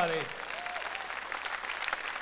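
Church congregation applauding in answer to the preacher's call, a dense patter of many hands clapping.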